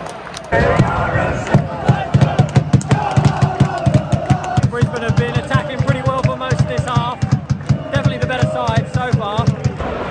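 Football supporters chanting together over a steady drum beat, starting abruptly about half a second in. One man's voice close by sings along loudly.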